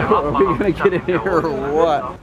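A person talking, words not made out, over a low hum of crowd and street noise.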